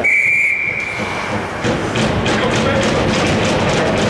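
Ice hockey referee's whistle blown once, a steady high tone lasting about a second and a half. It is followed by rink noise with scrapes and taps from skates and sticks on the ice.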